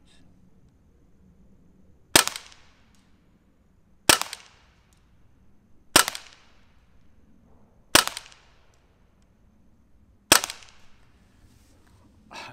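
Crosman AK1 CO2-powered BB rifle fired one shot at a time, five shots about two seconds apart. Each is a short, sharp pop with a brief fading echo.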